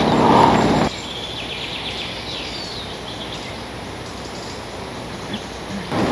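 Outdoor forest ambience: a steady background hiss with faint, high bird chirps between about one and three seconds in, after a brief louder rush of noise in the first second.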